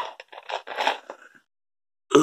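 A man's breathy exhales and mouth noises after a swig from a soft-drink bottle: a few short, uneven bursts in the first second and a half, then quiet.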